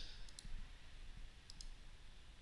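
Faint computer mouse clicking: two pairs of quick, sharp clicks, one pair just after the start and another past the middle.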